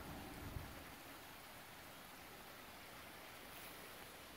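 Faint, steady rush of a small stream running down cascades in an eroded gully. A brief low rumble with a single knock comes in the first second.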